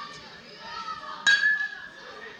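A metal baseball bat hitting a pitched ball: one sharp ping a little over a second in, ringing for about half a second.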